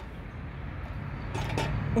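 Low, steady rumble of outdoor background noise, growing louder about halfway through, with a few faint short sounds near the end.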